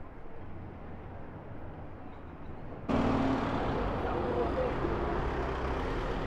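City street traffic: a low, muffled rumble at first, then, after a sudden cut about three seconds in, louder traffic as a London taxi drives past close by, with faint voices in the background.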